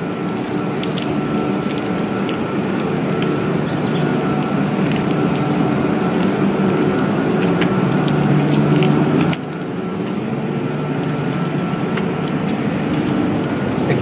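Steady machinery hum with several held tones, slowly growing louder and then dropping suddenly about nine seconds in, with a few light footstep clicks over it.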